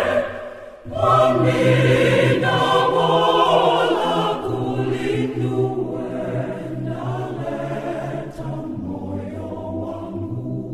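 Church choir singing a hymn in Chitonga, in several voices. The singing breaks off briefly just after the start, resumes about a second in, and grows softer toward the end.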